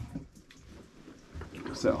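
A soft knock at the start, then faint scuffing and handling noise in a small, echoey rock space, ending on a short spoken word.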